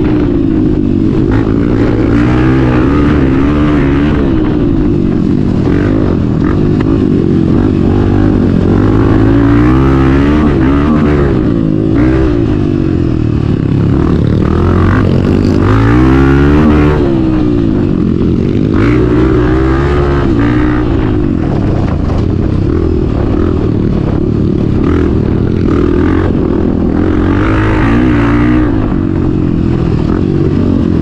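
Honda CRF250F's single-cylinder four-stroke engine, fitted with an opened airbox and a full stainless sport exhaust, ridden hard: its pitch rises and falls again and again as it accelerates, shifts and rolls off the throttle.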